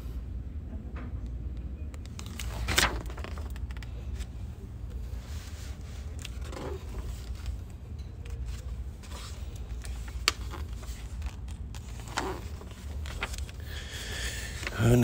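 Glossy magazine pages turned by hand, a short papery rustle three times with the loudest about three seconds in, a few light clicks between them, over a steady low rumble of room noise.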